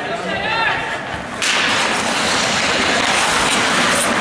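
Ice hockey faceoff: shouting voices, then about a second and a half in a sudden loud scraping hiss of skates and sticks on the ice that carries on as play starts.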